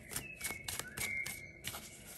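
Tarot cards being handled and shuffled: a run of soft clicks and rustles. A faint, thin, steady high whistle-like tone sounds through most of it.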